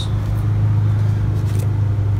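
A steady low machine hum, unchanging and loud.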